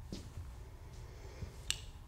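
Quiet room tone with a faint low hum, broken by one sharp, short click near the end.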